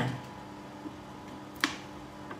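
A pause in talk with faint room tone and a steady low hum, and a single sharp click about one and a half seconds in.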